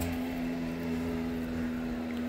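Steady hum of a motor vehicle's engine droning on one held pitch, with a low rumble beneath.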